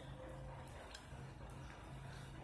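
A few faint clicks and light scraping of a small utensil stirring a thick face paste in a ceramic plate, over a steady low hum.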